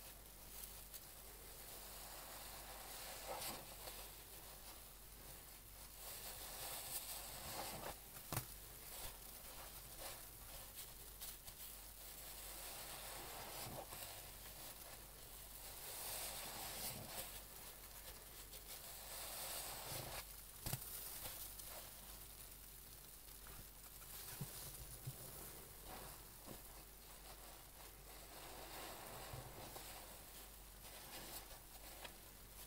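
Large foam car sponge soaked in Dettol suds being squeezed and kneaded by rubber-gloved hands: soft wet squelching and crackling of foam that swells with each squeeze every few seconds, with small sharp clicks and pops of bursting suds.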